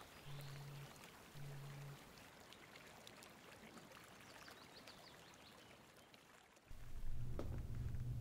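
Film soundtrack: faint outdoor ambience with a soft rushing hiss, under a low note that pulses twice in the first two seconds. About two-thirds of a second before the end, a loud low drone cuts in suddenly.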